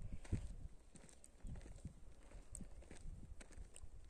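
Footsteps on dry, crusted bare ground: irregular scuffs and gritty crunches, loudest in the first half second and fainter after.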